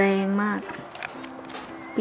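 A woman speaking briefly, then light background ukulele music with steady held notes.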